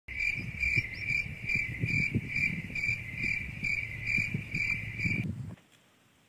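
Insect chirping in a steady pulsed rhythm, about three chirps a second, stopping about five seconds in. Beneath it is a low, irregular rumble that cuts off shortly after.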